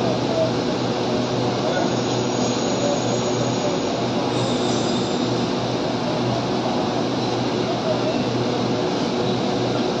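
Steady drone of a diesel passenger train idling at the platform, with faint crowd chatter underneath.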